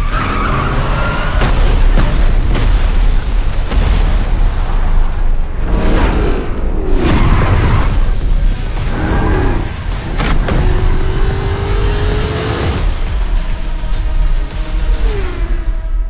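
Dense action-trailer sound mix: music over car engines and squealing tyres, with explosion booms and several sharp hits. A long rising whine runs through the middle.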